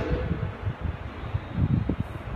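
Room noise picked up by the speaker's microphone: a steady hiss with irregular low thumps, a few stronger ones near the end.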